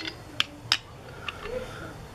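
A few short, sharp clicks of metal parts knocking as the removed Dynastart housing is handled, three of them within the first second and a half.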